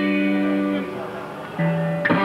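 Electric guitar chords: a held chord rings on and fades away, and a new chord is struck about one and a half seconds in.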